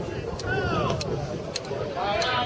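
Outdoor crowd noise on a football pitch: a man's voice shouting once, rising and falling, with a few short sharp knocks over a steady background.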